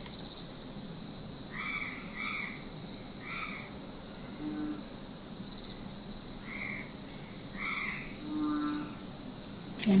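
Crickets chirring steadily in a high, even drone, with about six short frog croaks scattered through it.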